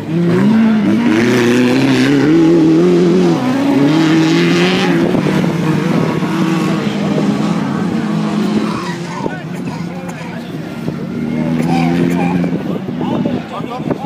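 Autocross racing car engines on a dirt track, revving hard and climbing in pitch through the gears several times, then fading somewhat after the middle as the car moves off around the circuit.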